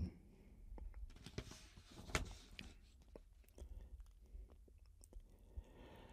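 Near silence: faint room tone with a few weak, short clicks scattered through it.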